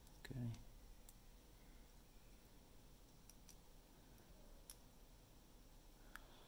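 Near silence broken by a few faint, sharp clicks of a small plastic earbud casing being pressed and fitted over its replacement battery, a test fit that does not close. A short low voice sound comes about half a second in.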